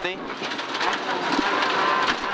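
Rally car engine heard from inside the cockpit, running hard under acceleration with the revs climbing steadily after a brief dip at the start.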